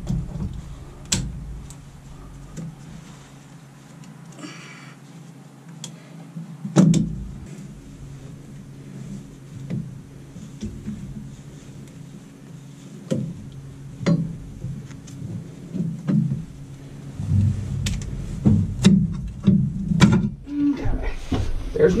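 Irregular metal clicks and knocks of locking pliers (vice grips) worked against small screws, with rustling of clothing and a few heavier thumps near the end.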